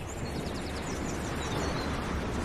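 Outdoor street ambience: a steady hum of road traffic that slowly grows louder, with a few faint bird chirps.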